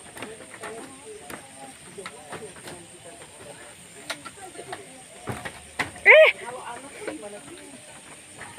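Footsteps clicking on a wooden plank boardwalk, with faint voices and a steady high hiss underneath. About six seconds in, a child gives one short, loud, high-pitched call.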